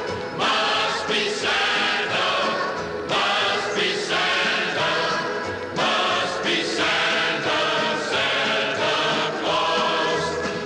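Choir singing with accompaniment, in sung phrases separated by short breaths.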